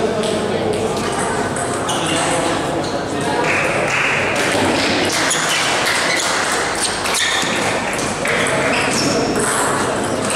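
Table tennis ball clicking off bats and table during a rally, over a steady murmur of voices in a large hall.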